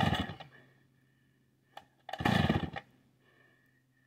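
Vintage Stihl 045 AV two-stroke chainsaw being pull-started: two short, loud pulls of the starter cord about two seconds apart, with the engine turning over but not starting.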